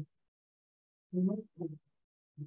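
Dead silence, then a woman's voice speaking a short phrase about a second in.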